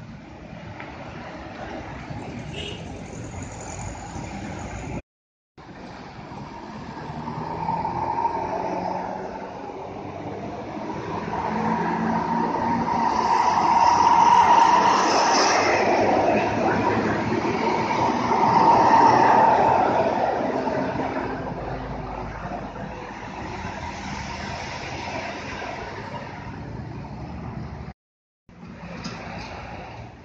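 A high-deck tour coach driving through a bend close by, its engine and tyres building to loudest about halfway through, peaking again a few seconds later, then easing off. Before a hard cut in the first few seconds, a loaded lorry pulls away.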